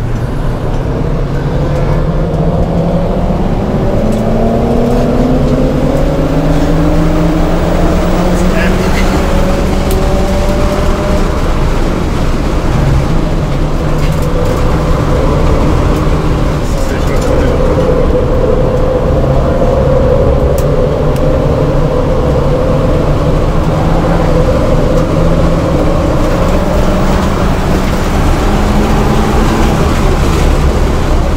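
2007 VW GTI's turbocharged 2.0-litre four-cylinder engine under hard track driving, heard from inside the cabin. The engine note climbs over the first ten seconds or so, runs fairly steady through the middle and rises again near the end.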